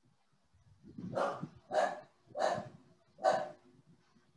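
A dog barking four times in a steady series, about two-thirds of a second apart, starting about a second in.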